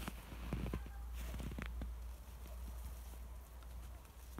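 A few short, irregular crunches and knocks, bunched in the first two seconds, over a steady low rumble of wind on the microphone.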